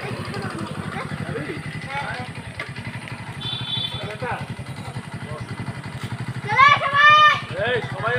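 Motorcycle engine idling with a low, even pulse, with voices talking over it and a loud shout about six and a half seconds in.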